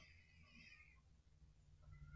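Near silence: faint room tone with a couple of very faint, wavering high-pitched tones, one early on and one near the end.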